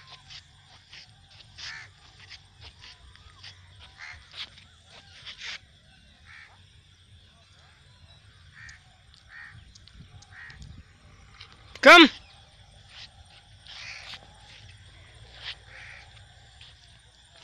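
Birds calling outdoors in scattered short notes, some crow-like, over a steady faint high-pitched hum and a low rumble.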